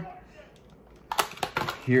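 A quick run of sharp plastic clicks and crackles starting about a second in: a 1/64 diecast car and its opened plastic blister packaging being handled.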